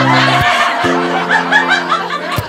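Audience laughing over music, with held low chords that change suddenly a couple of times.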